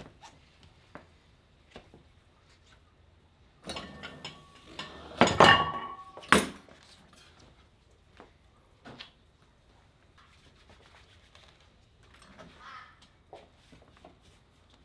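Metal clanking from the loaded weight of a cable-and-pulley vector wrench setup: a burst of clattering, ringing clinks a few seconds in that ends in one sharp clank, then scattered light taps.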